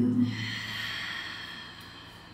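A long, soft breath out, a hissing exhale that fades away over about a second and a half: a slow, releasing breath.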